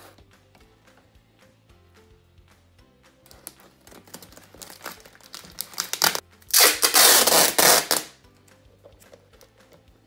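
Clear packing tape pulled off its roll, loud and rasping, for about a second and a half starting a little past the middle, after a few seconds of rustling and handling of plastic bottles. Soft background music runs underneath.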